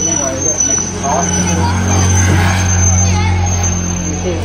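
Truck engine running with a steady low hum that swells slightly in the middle, with faint voices underneath.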